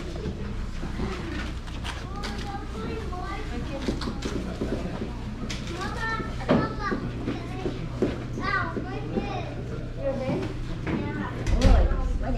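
Indistinct chatter of adults and children in a busy room over a steady low hum, with a few light knocks and a heavy low thump near the end.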